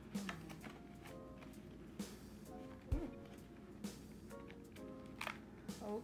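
Soft background music with held notes, over a few light clicks and a knock from paper bills and a plastic cash binder being handled.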